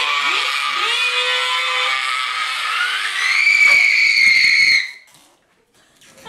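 A person's voice making a deliberately annoying noise: one long held tone that slides up about three seconds in to a shrill, piercing squeal, its loudest part, and cuts off suddenly about five seconds in.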